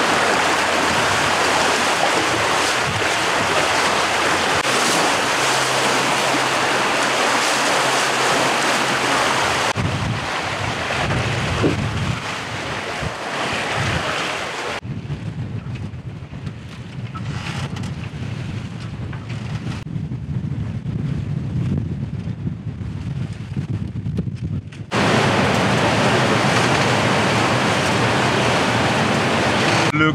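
Water rushing and splashing along a Leopard 45 sailing catamaran's hull as it sails through choppy sea, with wind buffeting the microphone. About halfway through, the water noise drops back to a lower wind rumble, then the loud rush of water returns suddenly near the end.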